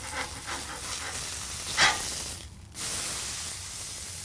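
Beef patty sizzling on a Blackstone steel griddle as it is flipped, with one sharp metal spatula scrape just before two seconds in. The sizzle dips briefly and then runs on steadily with the seared side up.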